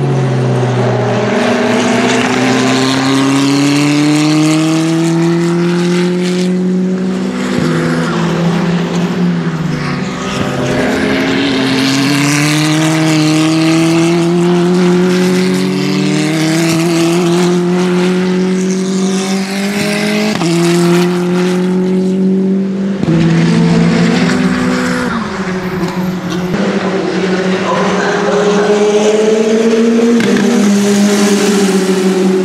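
W Series Tatuus F3 race cars with turbocharged four-cylinder engines, accelerating past at full throttle. The engine note climbs steadily in pitch and drops sharply at each upshift, several times over, and falls in pitch as a car passes at the start.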